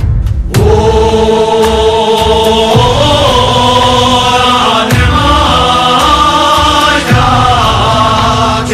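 Tibetan gorshay circle-dance song: voices singing long, held chant-like notes in unison, stepping between pitches, over a heavy low beat that lands about every two seconds.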